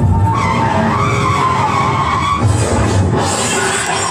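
Recorded sound effect of a car skidding, a noisy tyre screech that wavers up and down in pitch, cutting into the performance's backing music.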